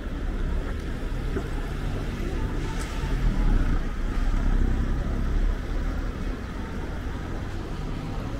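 City street traffic noise, with a small hatchback car passing close by and swelling to the loudest point about halfway through before fading. A single short click comes just before the car passes.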